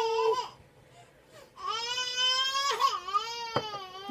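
A baby crying in two long, high-pitched wails. The first ends about half a second in, and the second, longer one runs from about one and a half to three and a half seconds in, its pitch falling at the end. The baby is fussing and grumpy.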